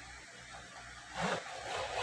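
A toy package, a clear plastic blister on a card box, being handled and turned over: two short rustles, about a second in and near the end.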